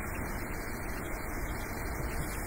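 Steady low hiss with a faint low hum: room tone, with no distinct event.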